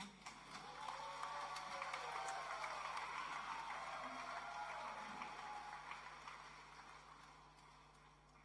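Audience applauding, with a few voices cheering. The applause swells over the first couple of seconds and then slowly dies away.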